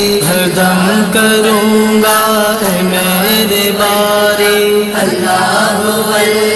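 A voice singing a hamd, an Urdu devotional song in praise of God, in long held notes that bend in pitch, with no clear words.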